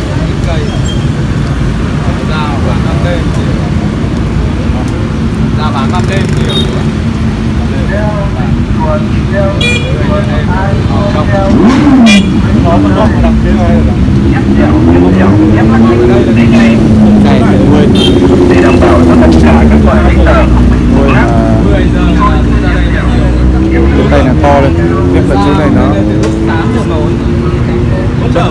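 Low rumble of street traffic, with a motor vehicle's engine running close by from about halfway through, its pitch rising and falling several times. People talk in the background.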